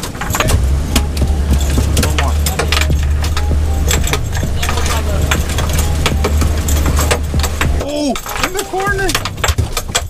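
Twin outboard motors on a center-console boat running under throttle, a steady low drone that drops away about eight seconds in. Over the rush of water along the hull come many sharp knocks and rattles. A shouted voice follows near the end.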